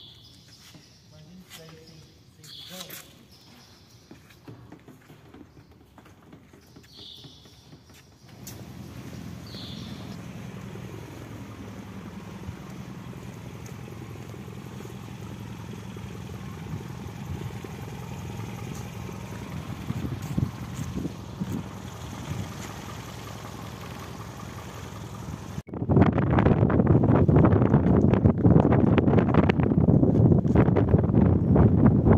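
Quiet at first with a few faint high chirps, then, from about a third of the way in, an engine running steadily with a low hum that drifts in pitch now and then. Near the end it cuts suddenly to a much louder rushing noise.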